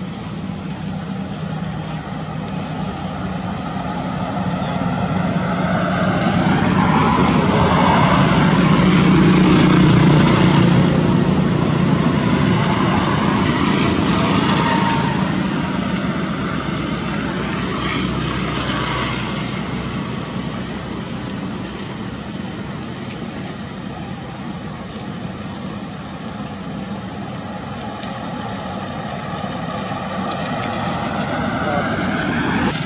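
A motor engine running steadily, louder toward the middle and then fading again, as a vehicle passing by would.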